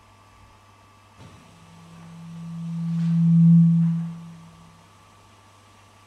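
A single low, pure tone swells up from about a second in, peaks past the middle and fades away by about five seconds, with a faint click as it begins.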